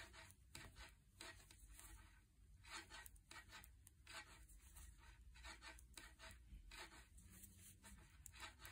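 Faint, near-silent light clicking and rubbing of metal knitting needles and yarn as 1x1 rib stitches are worked, an irregular couple of ticks a second.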